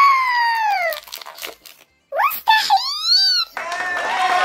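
Drawn-out exclamations of surprise or delight: a long falling 'ooh' in the first second, then short rising calls and an arching one. About three and a half seconds in, a cheering crowd sound effect starts.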